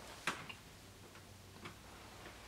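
Quiet room with a few faint, short clicks and taps from hands handling a plush giraffe toy.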